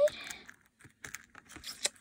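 Faint clicks and taps of small plastic toy pieces being handled as a miniature wallet is put into a miniature handbag, with a sharper click near the end.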